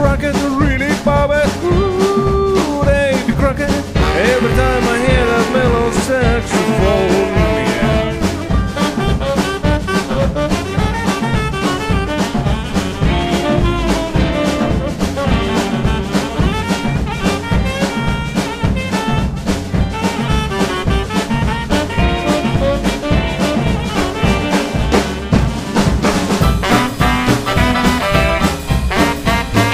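Live boogie-woogie band playing an instrumental break: a tenor saxophone solo over upright bass, piano and drums keeping a steady swing beat.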